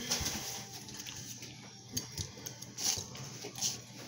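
Quiet mealtime sounds: a few short clicks and scrapes of plastic forks on paper plates, over a faint room hum.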